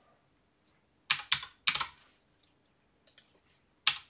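Keys tapped on a computer keyboard in two short clusters, about a second in and near the end, as dimension values are typed in.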